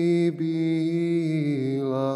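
Male voice singing a sevdalinka in Bosnian, holding one long note with a brief break just after the start and stepping down in pitch near the end.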